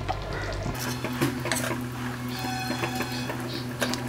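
A spatula scraping and knocking against the pan as thick fish curry is stirred, giving a few sharp clicks. A low steady hum sits beneath from about a second in.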